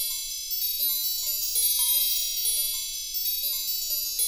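Twinkling chime sound effect: a cascade of bright, high ringing tones overlapping one another, with lower chime notes struck about three times a second.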